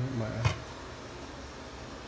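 A single sharp clink of the hot pot's glass lid on its stainless-steel pot as the lid is lifted off, about half a second in, over a steady faint hiss. A short murmured voice sound comes just before it.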